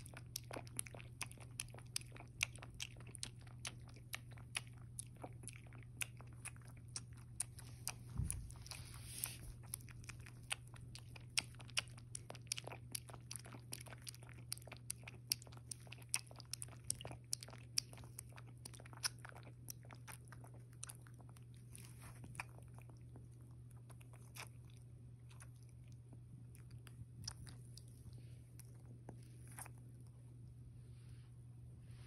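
A one-month-old puppy lapping milk from a bowl: rapid, irregular wet tongue clicks, thinning out over the last third, over a steady low hum.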